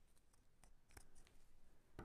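Near silence with a few faint, short clicks of small scissors snipping through a gauze bundle.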